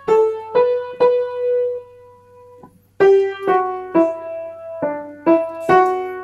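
Piano playing a single-note melody, struck notes about half a second apart; one note is held and fades away, and after a short gap the notes resume about three seconds in. A faint steady low hum runs underneath.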